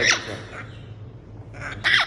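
Young African grey parrot giving a sharp downward whistle, then a run of harsh squawks near the end.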